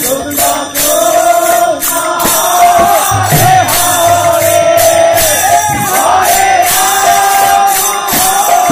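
Devotional kirtan singing: a voice holds and ornaments a wavering melody through a microphone, over small hand cymbals struck again and again and a drum stroke a little past the middle.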